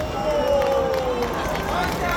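A voice calling out in one long drawn-out note that slowly falls in pitch, over the noise of a crowd, just after the rock backing track has stopped.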